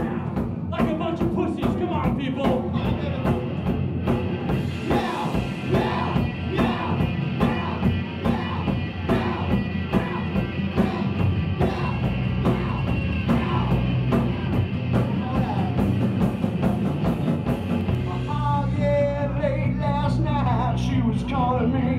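Rock band playing live through a PA: distorted electric guitars, bass and a drum kit keeping a steady beat of drum and cymbal hits, with a male singer's voice. Near the end the cymbal hits drop out and the vocal line comes forward.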